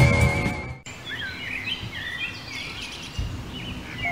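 Rock music with a steady beat cuts off abruptly under a second in, and several birds then chirp and call in short rising and falling notes over a faint outdoor hiss.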